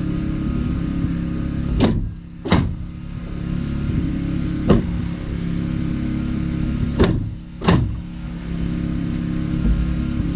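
Pneumatic framing nailer driving nails into wall framing: five sharp shots, a close pair about two seconds in, a single shot near the middle, and another close pair about seven seconds in. A steady mechanical drone runs underneath.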